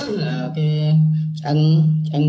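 A man's voice drawn out on one steady low note, a droning hum rather than words, opening with a sharp click.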